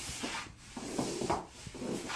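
Arms and legs sweeping back and forth over carpet, the coat sleeves and trouser legs rubbing on the pile in repeated swishes, about one a second.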